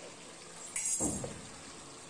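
Prawns frying in oil in a hot kadhai on a high flame, a faint steady sizzle as the prawns give off their water, with a brief louder rush of sizzle about a second in.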